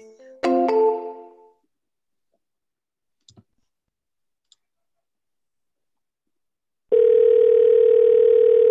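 Telephone ringback tone of an outgoing call: after a near-silent wait, a loud steady ringing tone starts about seven seconds in. About half a second in there is a brief chime-like tone that dies away.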